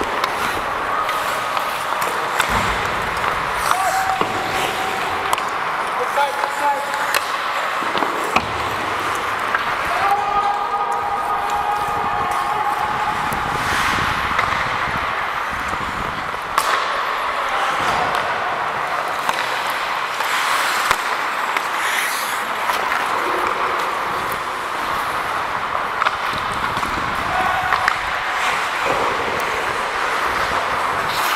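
Ice hockey in play: a steady scrape of skates on the ice, with many sharp clacks of sticks and puck. Players call out now and then, longest about ten seconds in.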